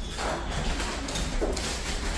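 Background noise of a dining room during a meal: faint voices in the distance, a brief snatch of a voice about one and a half seconds in, and small knocks of dishes and cutlery.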